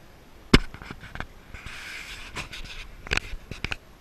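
A series of sharp clicks and knocks, the loudest about half a second in and a quick cluster near the end, with a brief hiss in the middle.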